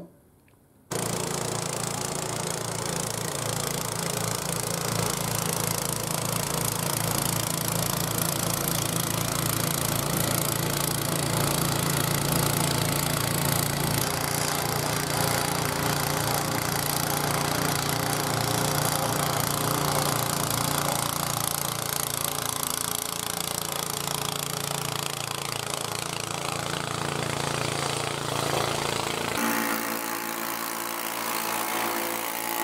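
PowerSmart DB7128PA two-stage snowblower's 252cc four-stroke engine running steadily under load while clearing heavy, wet snow, with the rush of the auger and impeller throwing snow. It starts abruptly about a second in after a moment of silence.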